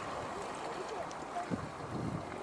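Distant people talking over a steady hiss of wind on the microphone, with a soft low thump about one and a half seconds in.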